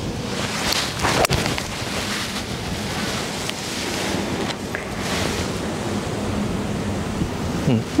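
Steady wind noise on the microphone, with a single sharp strike of a golf club hitting the ball on a full swing, a little over a second in.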